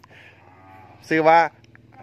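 Cattle mooing: a faint, drawn-out moo through the first second, with a short spoken phrase cutting in about a second in.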